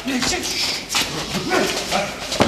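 Men's raised voices during a scuffle: short shouted calls that rise and fall in pitch, near the start and again about a second and a half in, over the noise of a crowd.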